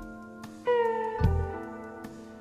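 Live jazz-fusion band of sax, guitar, bass, keyboards and drums playing. About two-thirds of a second in, a held lead note enters and bends slightly downward, over bass notes and drum hits.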